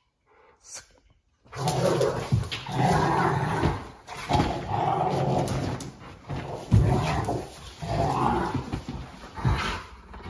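Rottweilers play-growling while they wrestle: rough, continuous growls in long stretches of about a second each with short breaks, starting about a second and a half in.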